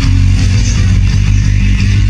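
Instrumental stretch of a rock song with no vocals, dominated by loud, heavy low bass notes.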